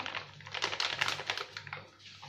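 Plastic flour bag crinkling in quick, irregular clicks and rustles as wheat flour is shaken out of it into a pot.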